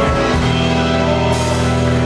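Live rock band playing an instrumental passage on drum kit and electric guitar, with held chords.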